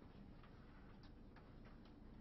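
Near silence: room tone with a few faint, small clicks in the second half.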